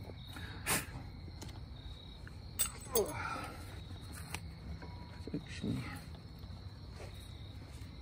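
A cloth wiping and rubbing a removed brake caliper, with a few light clicks and knocks as the metal caliper is handled, over a faint steady high-pitched tone.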